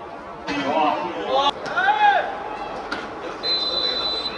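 Men shouting and cheering on a football pitch as a shot goes in, with the loudest shout about two seconds in. Near the end a referee's whistle sounds one long, steady blast.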